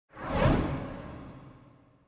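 A whoosh sound effect that swells to a peak about half a second in and then fades away over the next second and a half.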